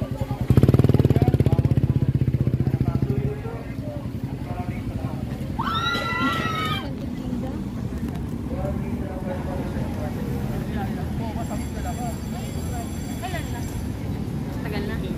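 A motorcycle engine running close by for about three seconds, then dropping away into a steady outdoor background of a busy promenade. A brief voice call comes about six seconds in.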